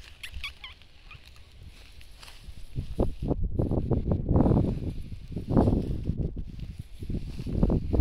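Small dog sniffing and snuffling with her nose down in the grass, in quick irregular bursts that grow louder after about three seconds: she is following the scent of a small animal.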